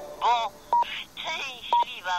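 Radio hourly time signal: short high beeps once a second, laid over brief snippets of telephone-quality voices.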